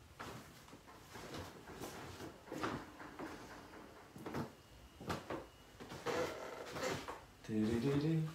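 Scattered knocks and clatters in a small room, with faint voices.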